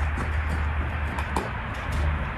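Steady low rumble and hiss of outdoor background noise, with a few faint ticks.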